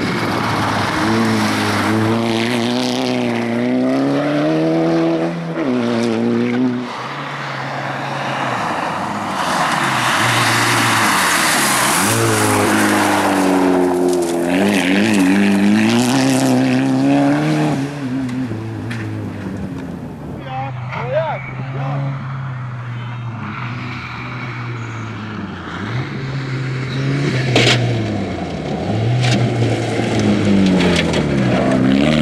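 Rally-prepared VW Golf's engine revving hard on a loose dirt stage, its pitch climbing and dropping again and again with gear changes, with tyre and gravel noise under it.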